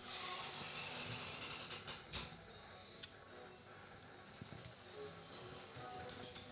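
Shimpo Whisper T electric pottery wheel spinning, its motor giving only a faint steady hiss, a little louder in the first two seconds, with a couple of light clicks; faint background music underneath.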